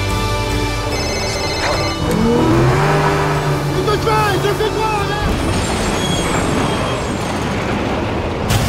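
Music stops about two seconds in, and a motorboat's engine revs up and runs hard while a man shouts in panic in French.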